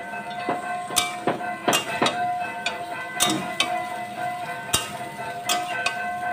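Metal spatula knocking and scraping against an aluminium kadai as ridge gourd and potato pieces are stir-fried, in irregular clinks about once or twice a second over a steady high hum.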